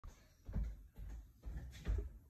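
Four low, muffled bumps, about half a second apart.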